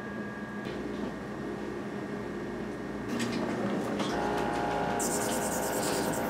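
Tenex ultrasonic tenotomy console and handpiece running: a steady multi-tone electronic hum that builds in steps as more tones join, with a high hiss coming in near the end.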